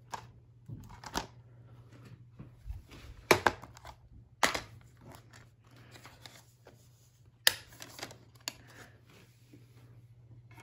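Hands handling a plastic DVD case and loading the disc into a game console: a run of sharp plastic clicks and snaps, the loudest a little over three seconds in, with another at about four and a half seconds and another at about seven and a half seconds.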